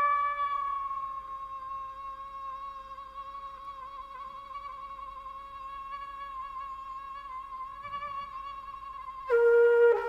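Trumpet holding one long, soft, steady note that fades down early and is then sustained quietly. Near the end a much louder, lower note comes in sharply.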